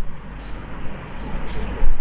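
A pause in the speech holding only steady low rumble and faint hiss of room noise, with a brief low thump near the end.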